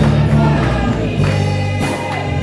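A gospel choir of many voices singing together with music accompanying them, and hands clapping along.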